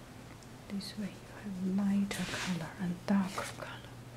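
A soft, murmured voice with no clear words, starting about a second in, some sounds held like humming, over a faint steady low hum.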